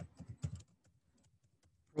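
Computer keyboard being typed on: a quick run of keystrokes in the first half second, then a few faint taps.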